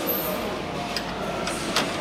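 Two light clicks, about a second in and near the end, as hands work the brass terminal fitting of an L-bar sealer's heat wire, over a steady background hiss.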